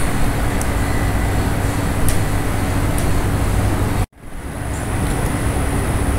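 Steady background noise with a low hum, with no voice. About four seconds in it cuts out completely for a moment, at a cut between two recorded segments, then comes back.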